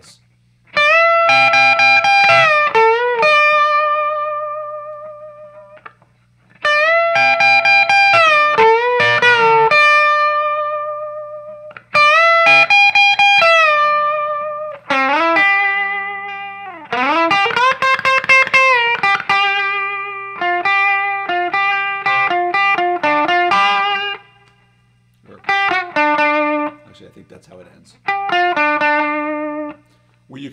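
Electric guitar in open G tuning, a Gibson semi-hollow body played through an amp, playing a rock riff: chord stabs and double-stops with bent and slid notes, each phrase ringing out before the next a few seconds later. A steady low amp hum runs underneath.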